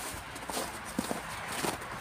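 Footsteps on packed snow, about two steps a second.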